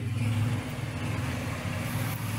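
Steady low hum with an even background noise, like distant traffic or a machine running.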